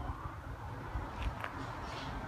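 Quiet outdoor background noise with a low rumble and a few faint clicks, about a second in and again near the end.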